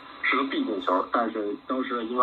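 Shortwave AM broadcast on 15.275 MHz, a strong signal received on a Bonito MegaLoop FX magnetic loop antenna through an SDRplay RSP DUO and played over a speaker: a voice talking continuously, cut off above about 4 kHz by the receiver's audio filter.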